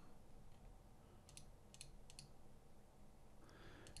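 Faint computer mouse clicks, about six short clicks, some in quick pairs, a little over a second in, as layer-group checkboxes are unticked; otherwise near silence.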